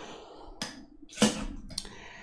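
Three short light clicks and taps, the loudest a little past a second in, with faint rustling between them: small craft items being handled and set down on a tabletop.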